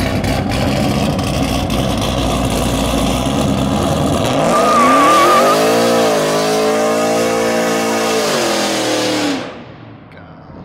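Chevrolet TrailBlazer engine revving hard during a burnout, the rear tyres spinning in their own smoke. The revs climb about four seconds in, hold high, then fall away near the end.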